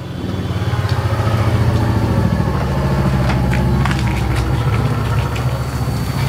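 An engine idling steadily with a fast, even pulse, swelling up over the first second or so. A few light clicks sit on top.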